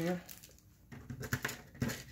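Small craft pieces handled on a tabletop: a few light, sharp clicks and taps in the second half, as a metal pin and small parts are set down and picked up.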